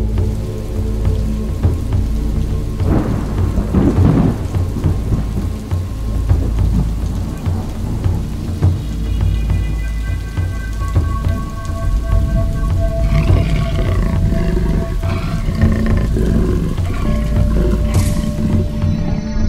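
Steady heavy rain with low rumbling thunder that swells a few seconds in. Soft sustained musical tones join about halfway through.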